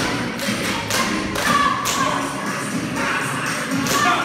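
Several tap shoes clattering and thumping on a wooden floor as a group dances, over music playing.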